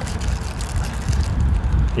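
Wind rumbling on the microphone, with light crinkling of a small plastic bag being opened by hand.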